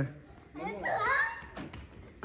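A child's voice calling out once, about half a second to a second and a half in, with no clear words.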